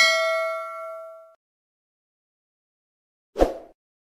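A bright bell 'ding' sound effect, as of a notification bell, ringing out and fading away over about a second and a half. About three and a half seconds in, a single short soft pop.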